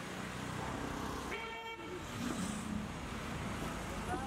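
A car horn sounds once, briefly, about a second and a half in, over steady street traffic noise.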